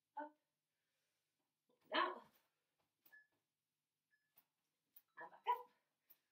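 A dog barking several times in short, separate barks, the loudest about two seconds in and two quick ones near the end.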